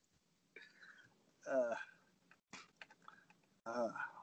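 A lull in conversation. A short hummed voice sound comes about a second and a half in, a few faint clicks and taps follow, and a hesitant 'uh' is spoken near the end.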